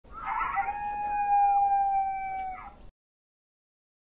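Coyote howl: a long call held at a near-steady pitch for close to three seconds, then cut off abruptly.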